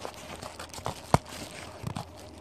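Cardboard shipping box being handled and worked open by hand: irregular rustling and scraping, with a few light clicks and one sharp knock about halfway through.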